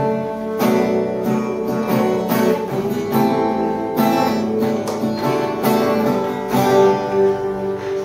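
Acoustic guitar being strummed, chords ringing with a fresh strum stroke roughly every second.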